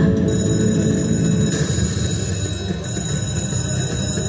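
IGT Star Goddess video slot machine playing its big-win celebration music and chimes while the win total counts up on screen.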